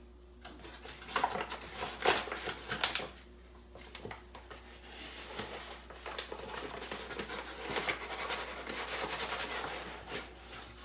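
Measuring cups and dry ingredients being handled at a kitchen counter: a few sharp knocks of a cup against the bowl and canisters, then scraping and rustling as flour, cocoa powder and salt are scooped from a paper bag and tins and poured into a mixing bowl.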